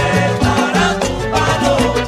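Salsa band music, loud and steady, with a stepping bass line under pitched instrument lines and regular percussion strokes.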